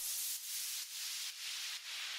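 Faint rhythmic hiss from the remix's outro, swelling and fading about twice a second in time with the beat, with no bass or melody under it.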